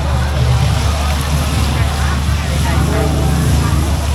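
Gas burners under a row of hoi tod frying pans running with a steady low roar, with crowd chatter over it.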